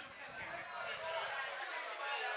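Faint men's voices calling over open-air ambience at a football pitch, much quieter than the shout just before.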